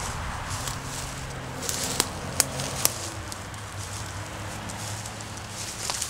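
Footsteps crunching through dry leaf litter and brush, with a few sharp twig snaps about two to three seconds in.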